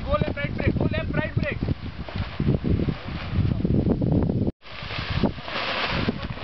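Wind buffeting the microphone, an uneven low rush, following a brief shouted voice in the first second and a half. The sound drops out for an instant about four and a half seconds in, then the wind noise returns.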